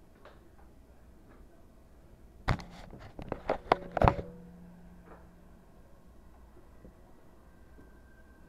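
A quick run of sharp clicks and knocks lasting about a second and a half, ending in the loudest knock with a short low ring, like something being handled and knocked on a wooden tabletop close to the microphone.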